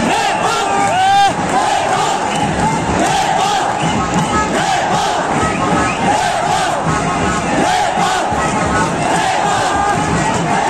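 Large stadium crowd of football fans shouting, many voices overlapping at a steady loud level. One louder shout close by stands out about a second in.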